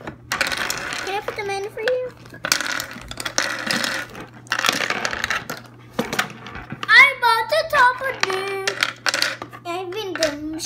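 Clear plastic bag crinkling and rustling in handfuls as plastic game pieces are pulled from it, with small hard plastic eggs and pieces clicking and clattering together. A child's high voice calls out from about seven seconds in.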